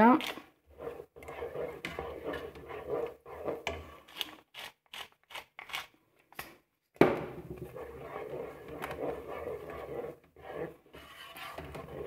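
Pepper mill grinding peppercorns in many short, rasping turns, with a brief pause about halfway through.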